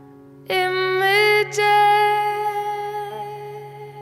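A woman's voice enters about half a second in, singing a long held note with a brief break near the middle, over a sustained chord on a Steinway grand piano.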